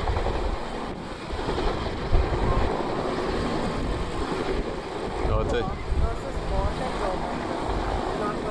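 Steady rush of wind on the microphone over the low rumble of a Bell UH-1 'Huey'-type firefighting helicopter flying by.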